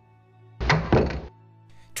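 A heavy double thud, two hits about a third of a second apart, about half a second in, over a quiet sustained musical chord.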